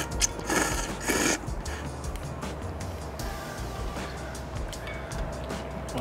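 Two short slurps of ramen noodles, about half a second and a second in, over background music.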